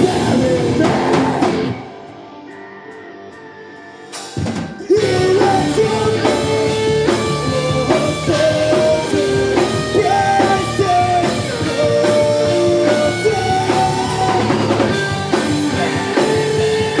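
Heavy metal band playing live: distorted electric guitars, bass and drum kit with shouted vocals. About two seconds in the band stops for a couple of seconds, leaving only a faint held note, then the whole band comes back in.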